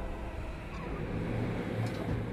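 A low, steady rumbling drone in a dark TV drama soundtrack, slowly fading after a loud musical hit.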